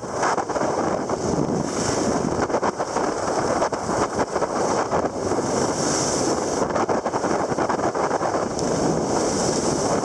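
Wind rushing over the microphone together with the continuous hiss and scrape of skis sliding over packed, groomed snow at speed downhill, the high hiss swelling now and then.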